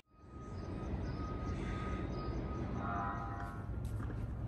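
Outdoor ambience: a steady low rumble under a faint even hiss, with a faint held tone in the first couple of seconds.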